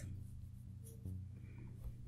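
Faint scratching of a paintbrush on watercolour paper, over a low steady hum.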